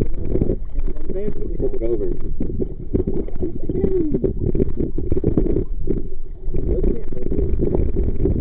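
Sea water sloshing and churning against a waterproof camera held at the surface, a dull low rumble with constant jostling. Muffled voices talk through it.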